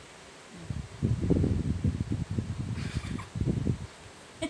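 Muffled rustling and bumping close to the microphone, starting about three-quarters of a second in and lasting about three seconds: handling noise of clothing and hands moving against the recording phone.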